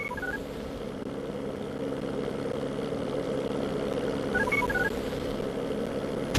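A steady engine drone with a constant hum, joined twice by a short run of high electronic beeps: once at the start and again about four and a half seconds in.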